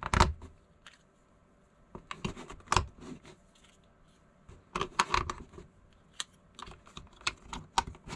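AAA batteries being pushed into the plastic battery compartment of a digital weather-station display, then the battery cover pressed shut: a scatter of small plastic clicks and taps in short clusters.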